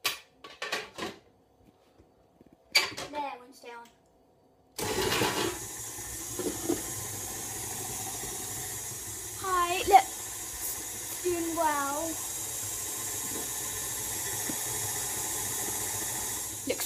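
Electric stand mixer starting suddenly about five seconds in and then running steadily, beating sponge-cake batter. Short voice sounds come before it starts, and a child's voice sounds twice over the mixer.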